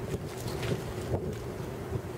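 Wind buffeting the microphone, a low uneven rumble, with a faint steady hum underneath.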